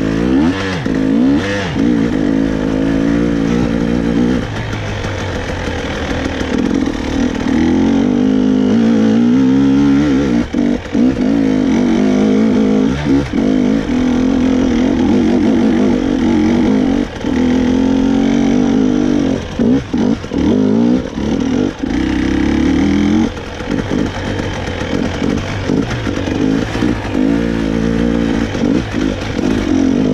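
Two-stroke 300 cc enduro motorcycle engine being ridden off-road, revving up and down with the throttle, with frequent brief throttle chops where the sound drops away.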